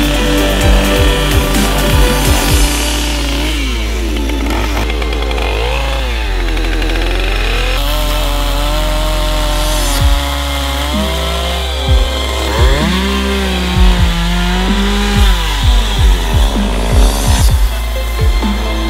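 A small two-stroke Stihl chainsaw carving wood, its engine revving up and down again and again. It is mixed with electronic music that has a steady kick-drum beat and deep bass.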